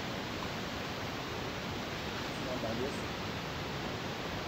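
Steady hiss of background noise throughout, with a brief faint murmur of a voice between two and three seconds in; the plugging-in of the cable makes no clear click.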